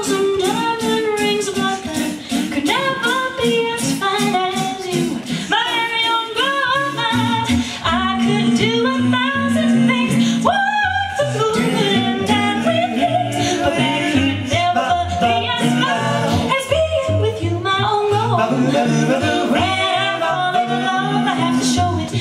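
Five-voice a cappella vocal jazz group singing live in close harmony, led by a female voice. A low sung bass line comes in about seven seconds in.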